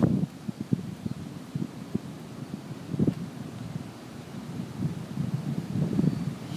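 Wind blowing on the microphone: an uneven low rumble with louder gusts near the start and about three seconds in.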